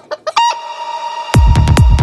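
Psytrance track at a breakdown: the beat drops out and sampled chicken clucks sound over a held pitched tone. The driving kick drum and rolling bassline slam back in about a second and a half in.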